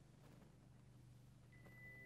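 Near silence: room tone, with a faint high sustained note coming in about one and a half seconds in as the music begins.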